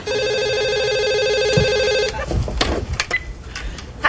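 Cordless telephone ringing with an electronic warbling tone for about two seconds, then cutting off. A few clicks and knocks follow as the handset is picked up.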